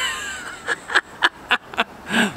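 A man laughing: a high-pitched laugh that fades just after the start and trails off into a few short breathy chuckles.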